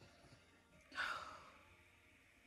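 A woman's breathy sigh: one exhale about a second in that fades out within half a second.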